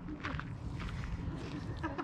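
Quiet outdoor background: faint voices over a low steady rumble, with a brief voice fragment near the end.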